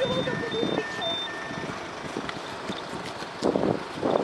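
A quick run of short electronic beeps alternating between a high and a lower pitch, about six of them in the first second and a half.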